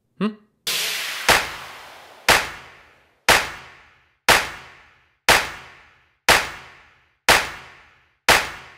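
A sharp hit about once a second, each one ringing out and fading before the next, laid over the picture as an edited sound effect. A longer swell that fades away comes before the first hit.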